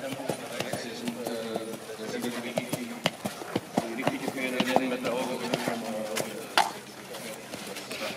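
Voices talking, with a trotter's shod hooves knocking on paving stones as the harnessed horse steps about, a handful of sharp knocks standing out a little after the middle and near the end.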